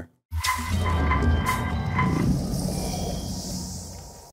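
Outro sting in sound design: a low whoosh with four chiming notes about half a second apart, then a high hiss that fades away.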